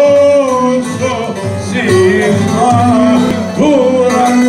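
Live Cretan dance music: laouto lutes and a drum kit keeping a steady rhythm under a male voice singing a wavering melodic line into a microphone.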